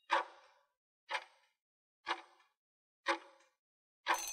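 Countdown timer sound effect ticking like a clock, four short ticks about a second apart, counting down the seconds left to answer.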